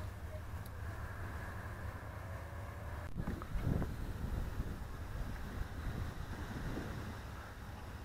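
Wind blowing across the camera microphone: a steady low rumble with an even hiss above it.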